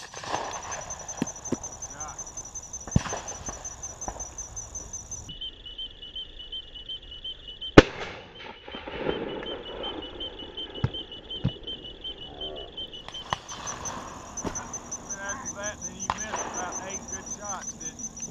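A single loud shotgun shot about eight seconds in, fired at a passing dove, with several fainter sharp cracks around it. Under it runs a steady, pulsing high insect trill.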